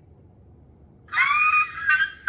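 A woman's high-pitched squeal of excitement, starting about a second in and held for most of a second, with a second squeal beginning near the end.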